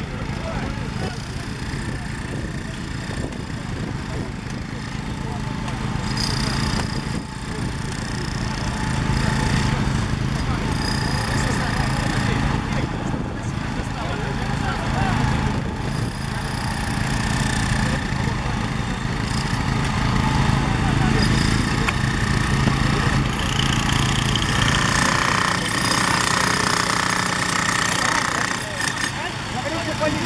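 An engine running steadily, with several people talking over it.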